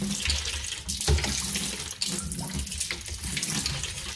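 Water from a homemade PVC hand pump's side outlet pouring and splashing into a bucket of water as the plunger is worked, with occasional low thuds.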